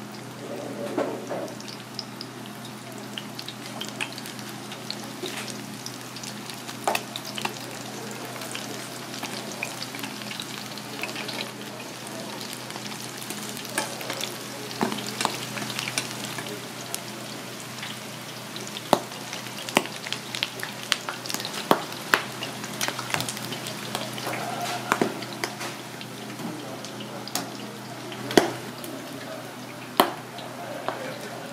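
Battered fritters deep-frying in hot oil in a stainless steel fryer: a steady sizzle with frequent sharp crackles and pops, busier in the second half, over a low steady hum.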